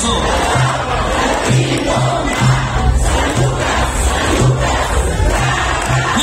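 Live romantic-trio band (guitars, bass guitar, drums and bongos) playing, with a repeating low bass note, under a dense mass of crowd voices.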